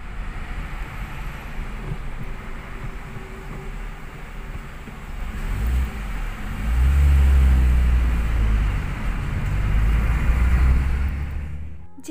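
Car engine and road noise heard from inside a moving car. A deep rumble grows loud about halfway through, holds for several seconds, then eases near the end.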